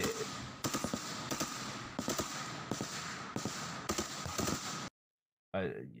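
Rifle fire from soldiers in a forest, heard through the audio of a played-back combat video: many sharp, irregular shots over a steady hiss, cutting off suddenly near the end.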